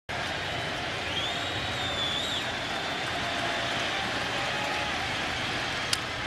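Steady ballpark crowd noise, with a high wavering whistle from someone in the crowd about a second in. Just before the end a baseball bat cracks sharply against the pitched ball, a fly ball to left.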